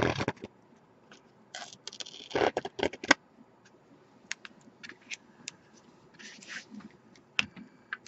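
Scratchy rustling and scraping of an adhesive strip and card stock being handled, in two short spells, with scattered light clicks and taps.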